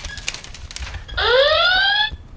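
Handheld electronic sound-effects toy sounding a rising whoop alarm. After a quieter gap, one whoop starts about a second in and climbs in pitch for most of a second before cutting off.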